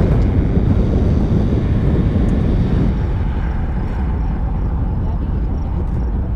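A loud, steady low rumble that eases slightly over the first few seconds and then holds even.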